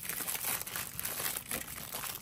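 Aluminium foil wrapper being peeled off a chocolate Easter egg, crinkling with many quick, irregular crackles.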